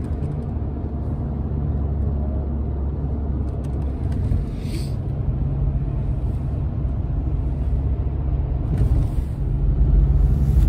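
Road noise inside a moving car at motorway speed: a steady low rumble of engine and tyres.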